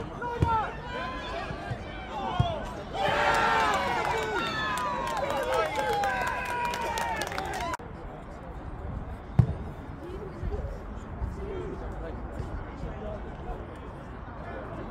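Voices shouting across an outdoor football pitch, swelling about three seconds in into a loud burst of several people shouting and cheering together for around five seconds. It cuts off abruptly, leaving quieter open-air sound with a single sharp thump a couple of seconds later.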